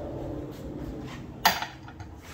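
A low steady background hum, then one sharp clack of a hard object about a second and a half in.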